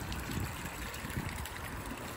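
Water lapping against moored boat hulls and the dock, a steady low wash with small irregular splashes.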